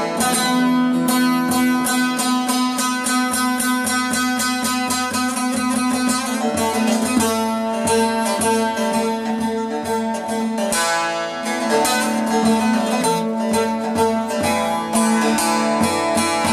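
Two bağlamas (long-necked Turkish saz lutes) played together in a fast plucked instrumental passage, with a steady low note held under the quick melody.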